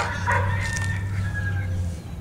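A long crowing call, like a rooster's, over a low steady hum that cuts off at the end.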